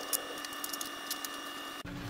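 Light, scattered clicks and taps of hollow 3D-printed plastic parts being handled and fitted together, over a faint steady high tone in the background.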